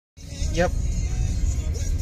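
Low, steady road and engine rumble inside a moving car's cabin, with a brief spoken "yep" about half a second in and music playing faintly.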